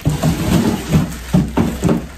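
Plastic mailer bag rustling and crinkling as it is handled and pulled open, in several short, loud, irregular bursts with bumps.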